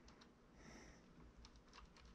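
Near silence, with a few faint scattered clicks and ticks from hands pressing and working modelling clay on a sculpture.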